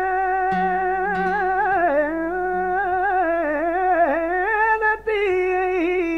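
Male flamenco singer drawing out one long, ornamented melisma with a wavering pitch, accompanied by acoustic guitar. He takes a short breath about five seconds in, then carries the line on.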